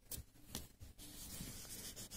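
Coloured pencil scratching on paper: a few short strokes, then from about a second in steady, rapid back-and-forth shading.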